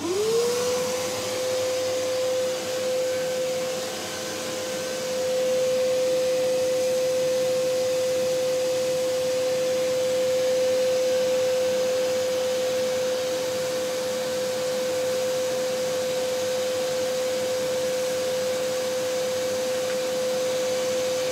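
Shop vacuum switched on: the motor spins up within a fraction of a second to a steady high whine and keeps running, with the rush of air drawn through the hose and a homemade cyclone dust separator. The sound dips slightly around four seconds in, then holds steady.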